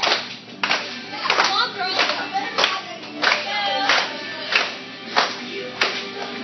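A group of kids clapping in unison on the beat, about three claps every two seconds, over a worship song with singing.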